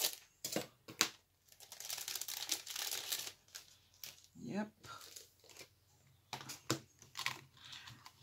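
Scattered light clicks and rustles of paper and small craft items being handled, with quiet gaps between them.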